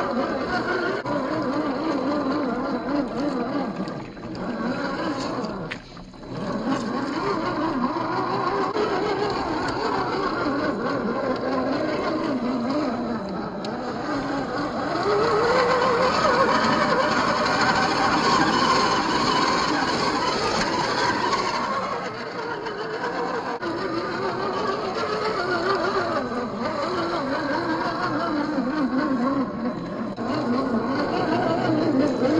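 Whine of a 1/10-scale RC crawler's brushed 540 45T electric motor and gear drivetrain, rising and falling in pitch with the throttle as it climbs. It drops out briefly about four and six seconds in and runs loudest in the middle stretch.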